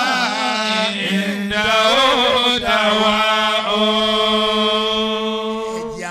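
A man's voice chanting melodically in Arabic into a microphone, with wavering, ornamented turns of pitch, then a long steady held note for the last three seconds.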